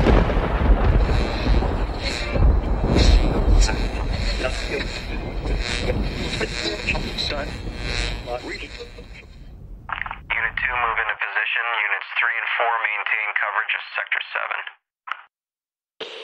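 A loud explosion with a deep rumble and repeated sharp cracks like gunfire, dying away about ten seconds in. Then a voice comes over a crackly, thin military-style radio, saying "Vector…" near the end.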